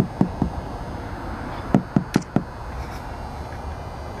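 Knuckles knocking on a car windshield to wake someone asleep inside: three quick knocks, then four more about a second and a half later.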